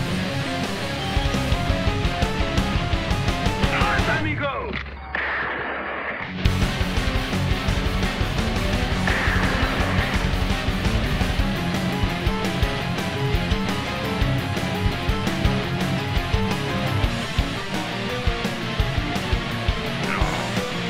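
Progressive metal instrumental: a distorted electric guitar riffs over a steady beat. The guitar is an ESP MH400 played through a Yamaha THR-10X amp, recorded raw without EQ or compression. About four and a half seconds in the band drops to a brief muffled, filtered break, then comes back in full about six seconds in.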